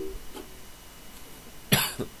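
A sung note over ukulele stops at the very start, leaving faint hiss; about three-quarters of the way through, a person coughs once, briefly.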